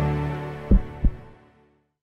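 End of a short intro logo jingle: a held low synth chord fading away, with two deep thumps about a third of a second apart near the middle, like a heartbeat.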